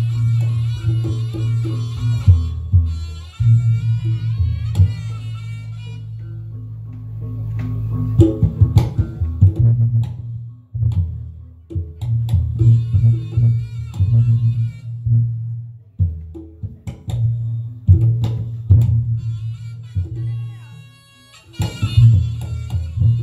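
Live Reog Ponorogo gamelan accompaniment: sharp drum strokes and a deep pulsing gong-chime beat under a high wavering reed-pipe (slompret) melody. The melody and drumming thin out for a couple of seconds about a third of the way in, then pick up again.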